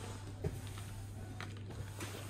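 Faint shop background music over a steady low hum, with a couple of soft knocks from packaged goods on plastic hangers being handled.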